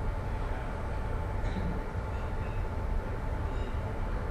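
Steady low rumble of room noise with a faint constant hum.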